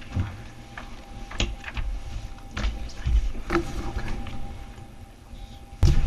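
Handling noise at a wooden lectern: scattered light knocks and rustles over a low room rumble, with one louder thump just before the end.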